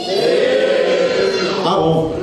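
Voices holding a drawn-out, sung-sounding vowel together like a choir for about a second and a half, changing near the end.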